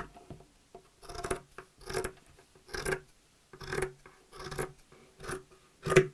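Scissors cutting through burlap (hessian): a series of about seven snips, roughly one a second, the loudest near the end.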